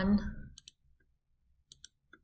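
A few small sharp clicks from a computer mouse advancing a presentation slide: one single click, then a quick pair near the end, with near silence between them.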